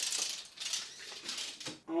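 Metal tape measure blade rattling and scraping against a shelf as it is moved, with a few sharp clicks.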